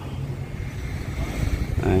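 Low steady rumble of car engines idling, with wind buffeting the microphone.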